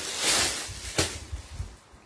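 Clear plastic garment packaging rustling and crinkling as it is handled, with a sharp crackle about a second in; the rustling dies down near the end.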